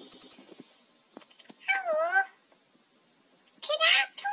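A high, meow-like animal cry, rising then falling, about half a second long, comes about two seconds in, and a second cry starts just before the end; faint clicks sound between them.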